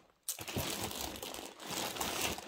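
Crinkling and rustling of plastic wrapping and a fabric tote bag as a hand rummages inside it, starting a moment in after a brief quiet.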